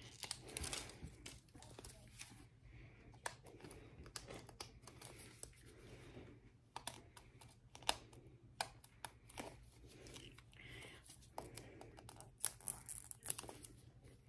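Packaging layers of a toy surprise ball being picked at and torn off bit by bit: faint crinkling and tearing with scattered sharp crackles.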